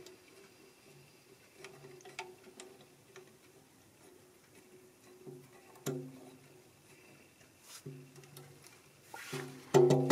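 Faint background music with a steady low pitched drone, broken by a few light clicks as a wrench works a nut on the banjo's rim hardware, three of them sharper about two, six and eight seconds in.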